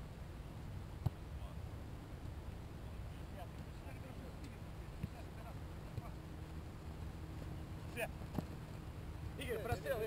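Outdoor soccer pickup game: faint distant shouts of players over a steady low rumble, with a few sharp thuds of a soccer ball being kicked, the loudest about a second in and two more close together near the end.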